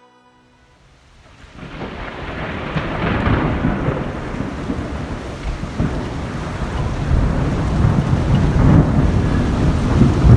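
Storm sound effect: rain with rolling thunder, fading in about a second and a half in and building steadily louder.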